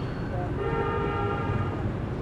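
A vehicle horn sounding one steady, held blast of about a second and a half, over the low hum of street traffic.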